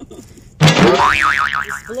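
A comic 'boing' sound effect about half a second in: a sudden loud twang, then a tone that wobbles evenly up and down several times and fades.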